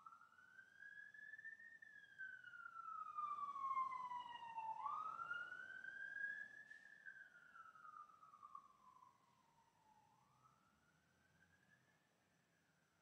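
A faint siren wailing, its pitch sweeping slowly up and down in long rises and falls, fading after about nine seconds.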